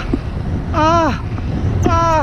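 A frightened man wailing long "aah" cries, one about half a second in that rises and falls in pitch and another starting near the end. Under them runs a steady low rumble of wind on the microphone in flight.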